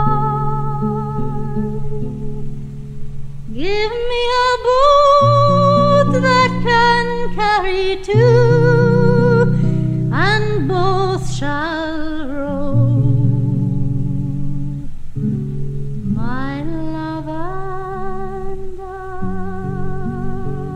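A woman singing a slow folk ballad with a wide vibrato, accompanied by acoustic guitar. Her long sung phrases break off for a few seconds in the middle while the guitar plays on.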